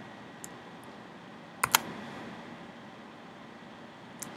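Computer keyboard clicking while code is edited: a faint tap about half a second in, then a quick, louder pair of clicks a little after a second and a half, over a steady background hiss.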